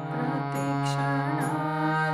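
Harmonium, the hand-pumped reed organ, sounding a devotional melody over a steady low held note. A voice sings along in wavering, ornamented lines over the reeds.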